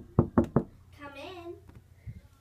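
Four quick knocks in a row, about five a second, in the first half-second.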